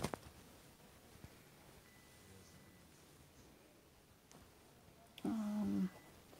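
Quiet room tone with a sharp knock at the start from the phone being handled. Near the end comes a brief hum from a person's voice, held on one pitch for under a second.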